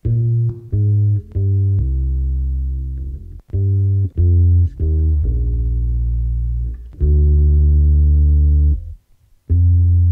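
Deep electronic bass line playing on its own, with no drums: a run of short notes, then longer held notes, with a half-second break just before the end.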